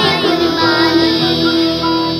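A young girl singing an Urdu Islamic devotional song (naat/gojol) about the Eid qurbani sacrifice, holding one long note.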